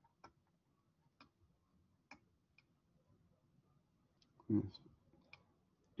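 A handful of faint, widely spaced clicks of a computer mouse, with a brief murmur from a man's voice about four and a half seconds in.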